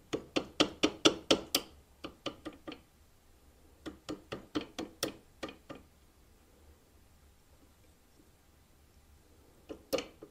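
Light, rapid taps of a rubber-faced hammer driving an anti-walk trigger pin into an AR-15 lower receiver, pushing out the silver slave pin that holds the binary trigger assembly together. Two runs of taps about five a second, the first about three seconds long and the second about two, then a single tap near the end.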